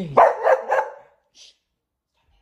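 A dog barks three times in quick succession, all within about the first second.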